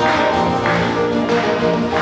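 Two acoustic guitars playing an instrumental passage: steady strummed chords about every half second under held melody notes.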